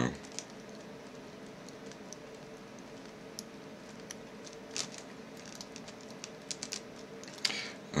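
Faint, scattered light clicks of a steel half-diamond lock pick working the pin stacks of a six-pin euro cylinder held under tension, a few small ticks at a time over quiet room noise.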